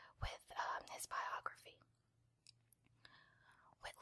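Close-up whispered speech with a few small mouth clicks, pausing briefly in the middle.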